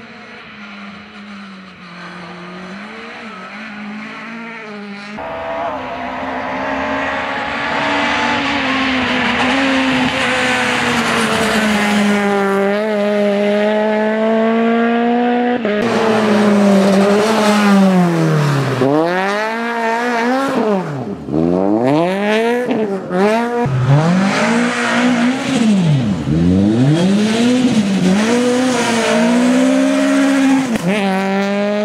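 Peugeot 208 rally car's engine at high revs on a tarmac rally stage, growing louder as it approaches. In the second half the revs repeatedly drop sharply and climb again through a series of bends.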